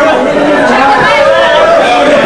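Hardcore punk band playing live, shouted vocals over bass and the rest of the band, loud and distorted through a camcorder microphone.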